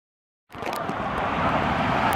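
Steady rushing of water and wind buffeting a rider-held camera's microphone as the rider sets off down an open fibreglass water slide; it starts about half a second in and grows with speed.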